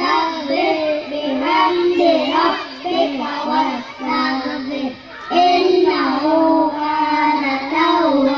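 A group of young boys chanting a short Quran surah together into microphones, in a sung, melodic recitation phrased in long lines with a brief breath pause about five seconds in.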